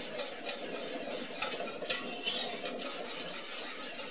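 A spoon stirring sugar and spices into beet juice and vinegar in a stainless steel saucepan. Soft, irregular scrapes and light taps against the pot run over a steady low hiss.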